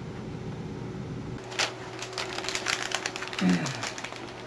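Clicking and tapping of a computer keyboard and mouse, with a single sharp click about one and a half seconds in, followed by a run of quick, irregular clicks, over a low steady hum.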